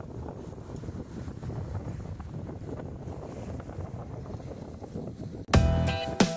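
Wind buffeting the microphone over the sea, a steady low rumble. About five and a half seconds in, music with a sharp beat starts suddenly and is louder.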